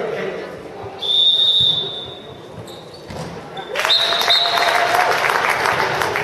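A referee's whistle blows once, about a second in, a steady high blast lasting under a second. From about four seconds a burst of clapping and cheering starts with a short high call, with many quick claps that carry on.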